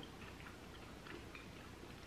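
Quiet room tone with a few faint, irregular clicks.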